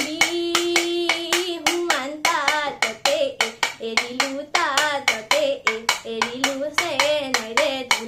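A young woman singing a bihu song, opening on a long held note, over a toka, a split-bamboo clapper struck against the palm in a steady beat of about three to four clicks a second.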